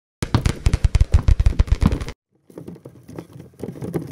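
A rapid clatter of many small hard balls dropping and knocking together, dense and loud for about two seconds. After a short break it comes back as a fainter, scattered clatter.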